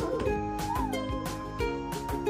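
Background music with a steady beat and held notes. A little over half a second in, a short cry rises and falls in pitch over it, like a meow.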